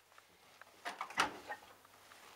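Door of a Hotpoint Aquarius+ TVF760 vented tumble dryer being pulled open: a quick cluster of latch clicks with a dull thump about a second in.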